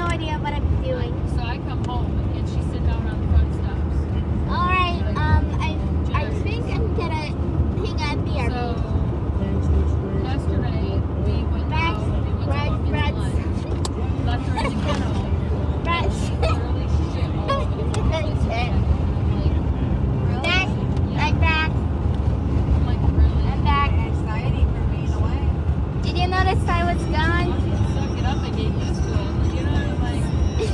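Steady low rumble of a car's cabin and road noise while driving, with voices talking on and off over it.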